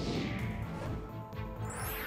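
Television news transition stinger. A sudden crash-like hit opens it, its swoosh falling in pitch over about a second, and a rising swish comes near the end.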